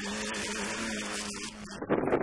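Rally car engine heard from a distance, holding a steady high-revving note that drops away near the end as wind noise on the microphone comes in.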